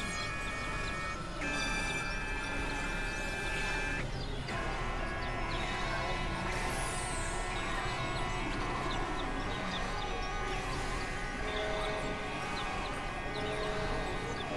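Experimental electronic drone music from synthesizers: layered held tones that shift to a new chord about a second and a half in and again near four and a half seconds, over a constant low rumble. High falling whistling sweeps come twice, in the middle and later on, and lower held tones enter near the end.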